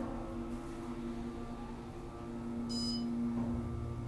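Elevator car travelling with a steady motor hum, and a short high electronic beep a little under three seconds in.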